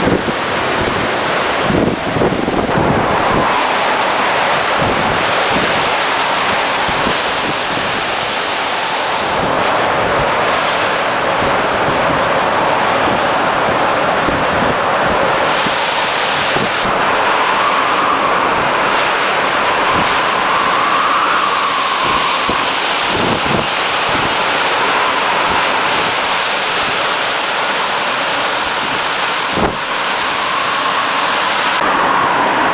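Hurricane-force wind blowing hard through trees and buffeting the microphone in a loud, steady rush, with a thin whistling note in the gusts past the middle.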